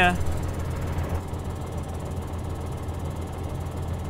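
John Deere 6930 tractor's diesel engine idling steadily nearby, a low, even hum.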